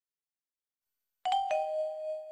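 Silence, then about a second and a quarter in, chime-like struck notes: a higher ding and then a lower tone that rings on, like a two-note doorbell, opening a piece of music.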